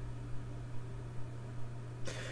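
Steady low hum with a faint hiss underneath, and a few soft irregular bumps.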